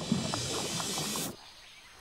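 Steady hissing rush of water that cuts off suddenly a little over a second in, leaving the sound much quieter.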